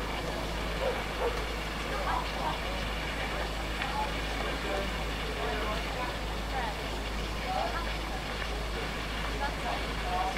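Scale-model steam traction engine running steadily as it drives slowly along, with faint voices in the background.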